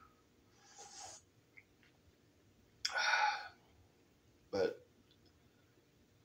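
A man sips coffee from a mug with a faint slurp about a second in, then gives a short breathy vocal sound, like a hiccup or an exhale, near the middle. A brief knock follows as the mug is set down on the table.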